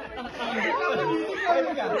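Several people talking at once in lively, overlapping family chatter.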